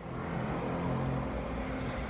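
Steady low rumble and hum of a car's interior with the engine running, fading in at the start.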